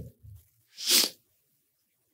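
A man's single short, sharp breath sound close to a handheld microphone, about a second in, loud and hissy.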